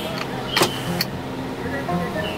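Motor vehicle engine running steadily, with a brief whoosh about half a second in and a sharp click about a second in.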